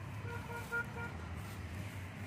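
A vehicle horn beeping five times in quick, even succession, over a low steady rumble.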